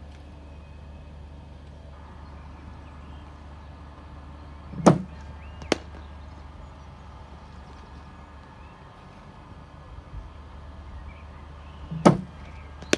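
A cricket bowling machine fires a ball with a dull thump about five seconds in, and under a second later comes the sharp crack of the bat meeting the ball. A steady low hum runs throughout, and another thump comes right at the end as the next ball is fired.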